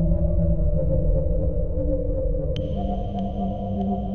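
Ambient electronic music: sustained low synthesizer drones, with a sharp hit about two-thirds of the way in, after which a high held tone joins.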